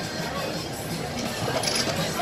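Restaurant ambience: background music and the murmur of other diners' voices, with a brief high clink of tableware near the end.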